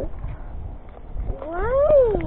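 A single drawn-out meow-like cry, rising and then falling in pitch, starting about a second and a half in.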